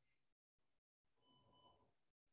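Near silence: faint background noise on a video call, cutting abruptly in and out.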